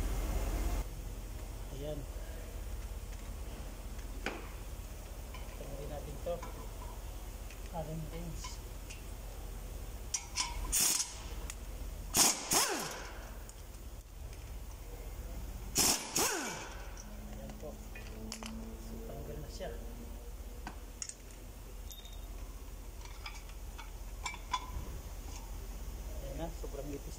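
Pneumatic impact wrench firing in several short bursts on the bolts of a rear brake disc and hub, loosening them, with light clinks of metal tools in between.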